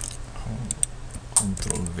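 Computer keyboard keys pressed a handful of times, sharp separate clicks, as cells are copied and pasted with Ctrl-C and Ctrl-V shortcuts in a spreadsheet.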